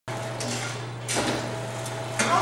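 Tomra T-83 reverse vending machine humming steadily as green bottles are pushed into its intake, with a noisy rush about a second in as a bottle is drawn in and carried away.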